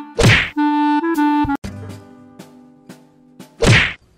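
Comedy sound effects added in editing: a sharp swish-whack, a short plinking musical sting with a click, and a second swish-whack near the end.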